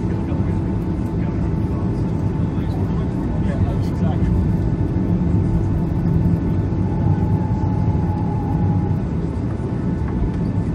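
Cabin noise inside a Boeing 737-800 taxiing slowly: the steady rumble and hum of its CFM56-7B engines at idle and the cabin air system, with voices in the background.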